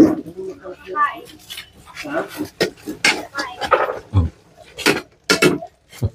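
People talking in the background, with a couple of sharp clicks a little before the end.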